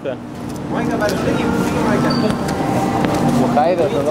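Steady hubbub of a busy indoor food court: indistinct background voices over a constant room rumble.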